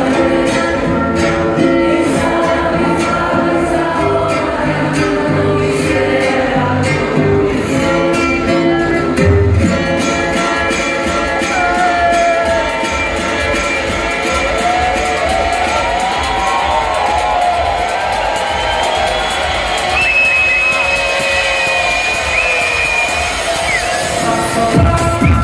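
Electronic dance music played loud over a club sound system. The pounding bass beat cuts out about nine seconds in, leaving a breakdown of held and sliding synth lines, and the low end starts to come back right at the end.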